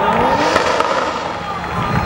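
BMW E36 drift car's engine revving hard and unevenly as the car slides sideways in a drift, its pitch rising and falling with the throttle.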